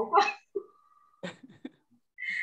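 A short burst of laughter through a video call, followed by a brief steady high tone and a few faint short clicks.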